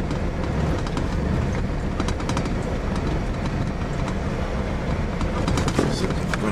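Steady low rumble of a vehicle driving over a rough, potholed gravel road surface, with a few small knocks and rattles from the bumps.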